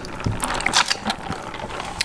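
Handling noise of a lidded drink cup with a straw being picked up and moved: an irregular run of small crackles and clicks.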